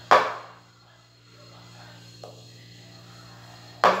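A single sharp knock about a tenth of a second in, dying away within half a second: a kitchen knife knocking against a plastic mixing bowl while cutting risen bread dough. After it comes a light click, over a faint steady hum.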